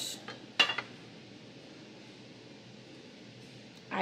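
Small brass soap dish set down on a glass tabletop: two sharp clinks in the first second, the second the louder and ringing briefly.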